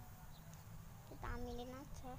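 A single drawn-out call, about a second and a quarter in, holding a steady pitch and rising slightly at its end, over a steady low rumble on the microphone.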